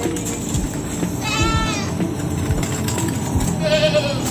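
Goat bleating twice, a quavering call about a second in and another near the end.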